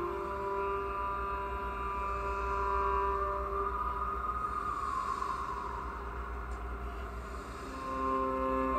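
Solo cello music with long held bowed notes. Around the middle, a rushing swell of noise rises and fades under the notes.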